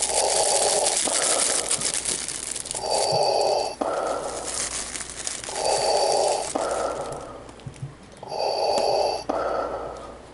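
Slow, heavy breathing close to the microphone through a plastic face mask: a loud rush of breath followed by a shorter, higher puff, repeating steadily about every three seconds, with a faint whistle of air in some breaths.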